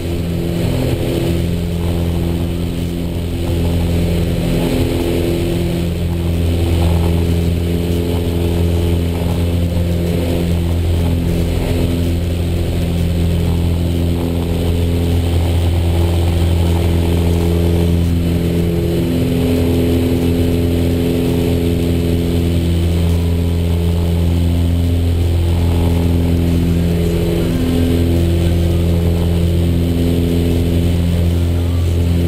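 Piper PA-34 Seneca II's two six-cylinder piston engines and propellers droning steadily in flight, heard inside the cabin, with some of the overtones pulsing slowly on and off.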